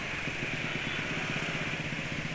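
Steady engine and road noise of motor scooters running slowly in dense motorcycle traffic.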